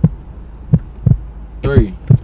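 A heartbeat sound effect: a low double thump about once a second over a steady low hum, building suspense. A voice speaks briefly near the end.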